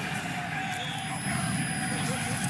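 Steady, crowd-like stadium ambience of a college football telecast, with faint voices in it.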